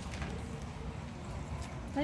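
A dog eating frosted cake from a cardboard box: faint licking and chewing sounds with a few soft ticks, over a low steady hum.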